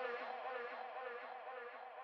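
Deep tech house synth pad holding a sustained chord whose pitch wavers quickly, about four or five wobbles a second, giving a buzzing edge. It fades slowly with no beat under it.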